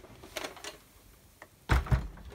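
Sizzix plastic die-cutting plates handled and put down: a sharp click at the start, a few faint ticks, then a heavier knock and clatter near the end.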